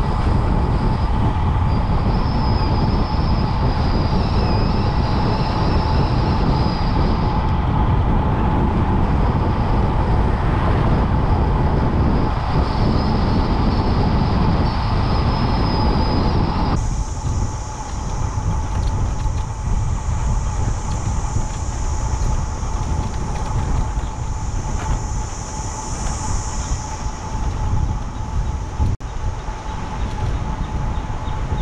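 Wind rushing over a bicycle-mounted camera's microphone while riding at speed down a road, a loud steady rumble with a thin steady tone over it. The rush drops and changes abruptly about 17 seconds in.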